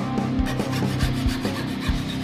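Hacksaw blade rasping back and forth through a block of wood held in a bench vise, over background music with a steady beat.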